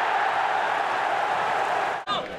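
Steady football crowd noise, an even wash of many voices with no single voice standing out, that cuts off abruptly at the end.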